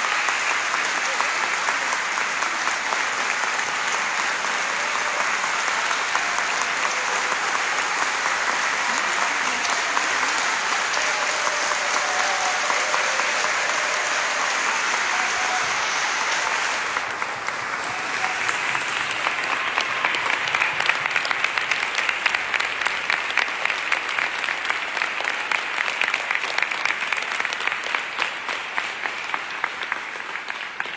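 Congregation applauding at length in a church; after about 17 seconds the clapping turns thinner, with individual claps standing out, and it fades toward the end.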